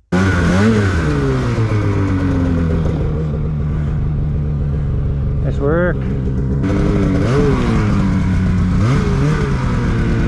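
Polaris 850 two-stroke snowmobile engine under way, heard close from the rider's seat. Its pitch rises and falls with the throttle several times, with one quick, sharp rev about halfway through.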